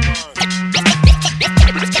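Hip hop instrumental beat with deep kick drums and quick scratch-like sweeps over it. The beat drops out briefly just after the start, then comes back.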